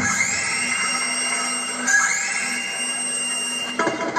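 Electronic sound effect on a mime soundtrack: a tone sweeps upward and settles into a held pitch, then does it again about two seconds later, over a steady low hum.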